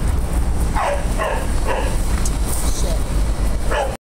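Dogs barking: several short, sharp barks that drop in pitch, spread through a few seconds, over a low rumble on the microphone.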